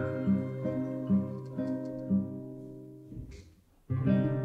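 An orchestra of Russian folk plucked-string instruments (domras and balalaikas) plays a repeated low plucked figure that fades away over about three seconds into a brief near silence. Right at the end, loud plucked-string music cuts in abruptly.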